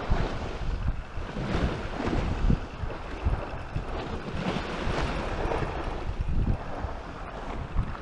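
Wind buffeting the microphone in uneven gusts, over the wash of sea waves against a concrete sea wall.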